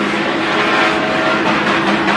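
Engines of a Chevrolet Cavalier and a Honda Civic racing around a dirt oval, heard steadily from the grandstand.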